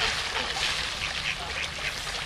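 Mallard ducks quacking in a run of short, overlapping calls over a steady background hiss.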